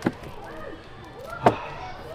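Two short, sharp knocks, one at the very start and one about a second and a half in, over a faint murmur of voices.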